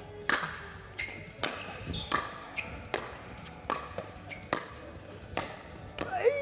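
A doubles pickleball rally: a hollow plastic ball struck back and forth by paddles faced with 60-grit sandpaper and bouncing on the court. There are about a dozen sharp knocks at uneven spacing, roughly two a second, some with a short ringing after them.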